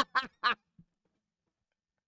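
A man laughing heartily into a close microphone in quick, voiced 'ha' bursts. The laugh stops about half a second in.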